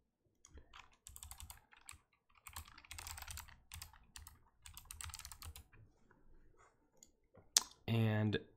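Typing on a computer keyboard in quick runs of keystrokes, followed by a single sharp click near the end.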